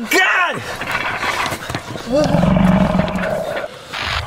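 A short shout, then about two seconds in a loud, steady low roar that holds one pitch for about a second and a half and stops shortly before the end.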